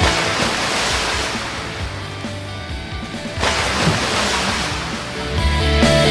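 The background rock music drops out into a wash of noise like surf, which swells and fades twice. The band comes back in near the end.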